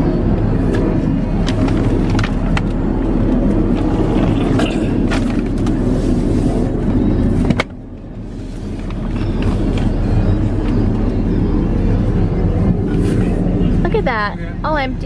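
A car idling under background music. The sound drops off abruptly a little past halfway, then builds back up.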